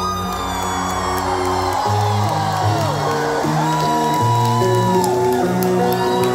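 Live band playing through a hall's PA: held notes over a moving bass line, with audience members whooping over the music.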